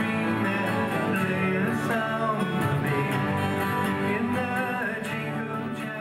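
Many acoustic guitars strumming chords together, a group playing a song in unison.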